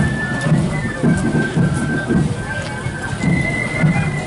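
Marching band playing: a high melody of held notes over a steady drum beat of about two beats a second.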